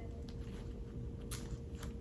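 Metal snaps on the collar of a Kut from the Kloth utility jacket being pressed shut by hand, giving a few faint clicks with light fabric handling, the clearest two near the end.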